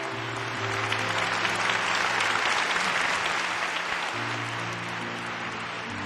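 Congregation applauding, swelling toward the middle and easing off, over sustained chords of background music.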